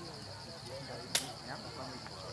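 A steady, high-pitched pulsing chirr with faint scattered calls, broken about a second in by a single sharp crack.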